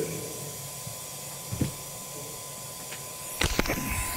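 Quiet room tone with a faint steady high tone, a single soft bump about a second and a half in, then from about three and a half seconds a quick run of clicks and knocks as the camera is handled and moved.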